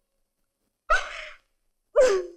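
A woman's sharp gasping breath about a second in, then the start of another vocal sound, a cry or sob, just at the end.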